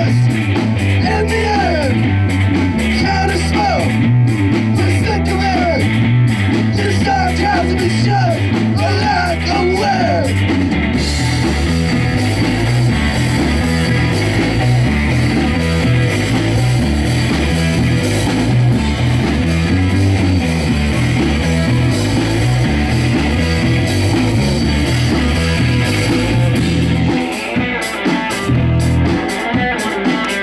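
Live rock band playing loud, with electric guitar and electric bass. A sliding melodic line sits over the first ten seconds or so. Near the end the low end breaks off in short gaps, leaving mostly guitar.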